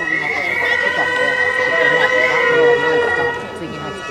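Gagaku court music accompanying a bugaku dance: a held, chord-like drone of sustained wind notes with a reedy melody line that bends and slides in pitch over it.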